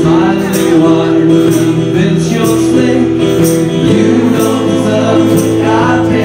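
Live acoustic band music: two strummed acoustic guitars and a keyboard playing at a steady beat, with a man singing.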